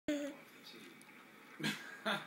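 Two brief vocal sounds: a short pitched squeak or hum at the very start and a short breathy burst, like a laugh, about a second and a half in, with faint room hiss between.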